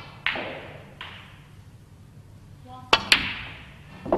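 Snooker cue tip striking the cue ball, with the clicks of balls on a match table. Each sharp click is followed by a short hall echo, and the loudest pair of clicks comes close together about three seconds in.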